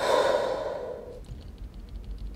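A woman's long exhaled sigh through pursed lips, starting sharply and fading away over about a second: a deliberate calming breath while she is upset.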